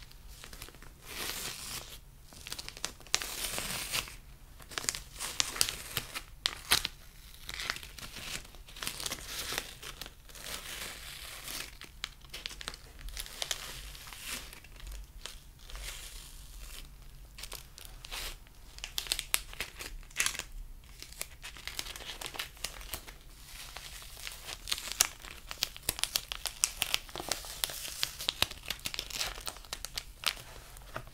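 Crinkly white wrapper crumpled and rubbed in the hands over a dark hat, an irregular run of close crackles with brief pauses, busiest in the last few seconds.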